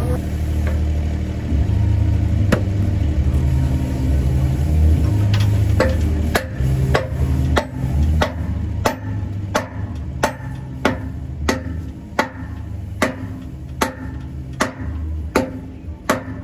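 Steady hammer blows, about one and a half a second from about five seconds in, driving a liquid-nitrogen-shrunk steel bushing into the hoist pivot bore of a haul-truck tipping body as an interference fit. A steady low rumble runs underneath.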